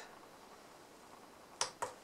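Two short sharp clicks close together near the end: the RUN key of a JINHAN JDS2023 handheld oscilloscope being pressed and released to unfreeze the display.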